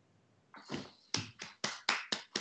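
A single person clapping, about four claps a second, starting about half a second in after the ukulele's last chord has died away.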